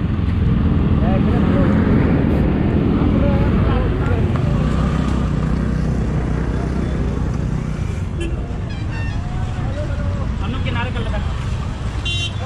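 Road traffic noise: motorbike and car engines running close by in a steady rumble, with scattered voices of a crowd over it.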